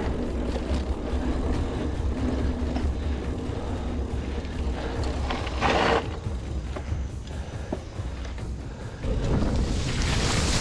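Mountain bike riding noise on a helmet- or bike-mounted action camera: knobby tyres rolling over a dirt trail under a steady low rumble of wind on the microphone. There is a loud, short brushing burst just before six seconds in, and a louder hiss near the end as the bike pushes through tall reeds.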